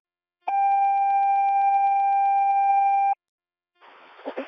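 Fire-rescue dispatch alert tone received over a radio scanner: one steady high tone, about two and a half seconds long, starting about half a second in and cutting off sharply, which marks a call being dispatched to the rescue units.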